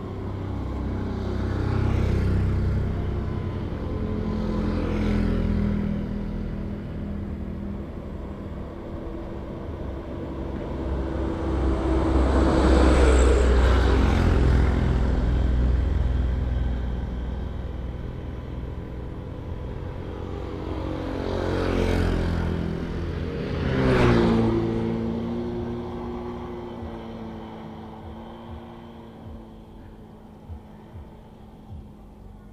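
Motor vehicles passing by on the road one after another, the loudest about halfway through. Two more go past near the end, their engine pitch dropping as each one passes.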